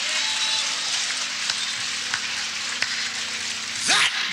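Congregation applauding, a steady clatter of many hands after the preacher's climactic line.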